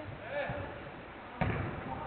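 Sharp thuds of a football being struck on an artificial-turf pitch in a covered hall, the loudest about one and a half seconds in, with players shouting.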